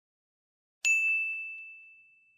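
A single notification-bell ding sound effect: one bright chime about a second in, ringing on one high tone and fading away over about a second and a half.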